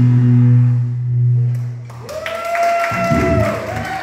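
A live rock band ends a song. A loud, low final note from the electric guitars and bass rings out and is cut off just under two seconds in. A long, high steady tone follows, with some applause.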